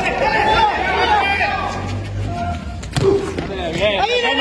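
Men shouting on and around a street futsal court, with a single thump of the ball being struck about three seconds in.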